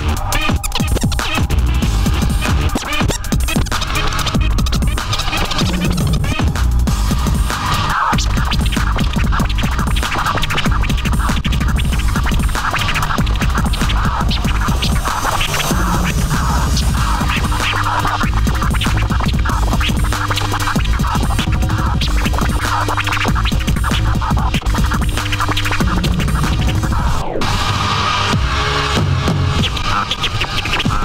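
Turntablist scratching on Technics turntables over a heavy bass beat, the record cut back and forth in quick strokes, with a falling pitch sweep near the end.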